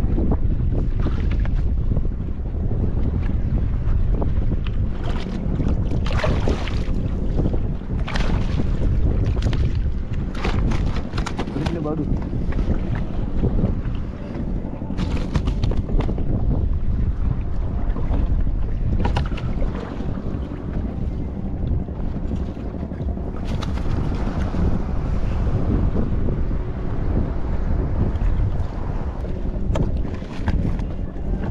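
Wind buffeting the microphone aboard a small open boat on choppy water, a heavy steady rumble with irregular louder rushes of wind and water every few seconds.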